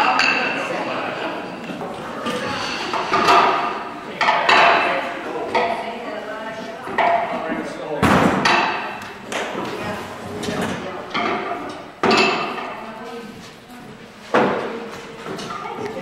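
Indistinct chatter of several people in a large echoing hall, broken by a few sharp knocks from the game pieces of a floor game being played on the wooden floor.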